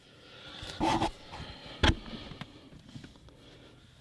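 A short sniff about a second in, then a single sharp click as the clipped-in headliner trim panel is handled, over faint room noise.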